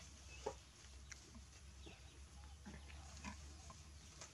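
Baby macaque giving a few short, faint calls that fall in pitch, the loudest about half a second in, over a low steady hum.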